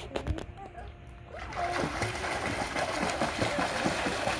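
Swimming-pool water being splashed by hand: continuous splashing that starts about a second and a half in and keeps going.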